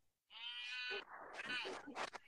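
A person's voice holding a high-pitched vowel for about two-thirds of a second, then quieter, broken vocal sounds.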